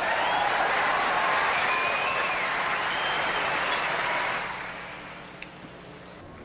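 Concert audience applauding, with a few whistles on top; the applause dies away about four and a half seconds in.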